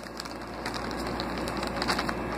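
Small clear plastic zip-lock bags crinkling and rustling as they are handled, a steady run of small crackles.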